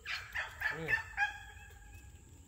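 Several short, pitched bird calls in quick succession, the last one drawn out, with a man saying "good" in the middle.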